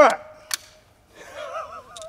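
A single sharp metallic click about half a second in as the break action of a double-barrel .500 Nitro Express rifle is opened, followed by a man's soft laugh.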